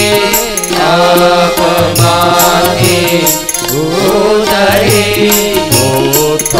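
Devotional Hindu bhajan, chant-like singing with musical accompaniment over a steady beat of sharp percussive strikes.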